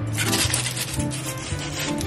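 Kitchen knife sawing through cooked steak on crumpled aluminium foil: a run of scraping, crinkling strokes, strongest in the first second, over background music.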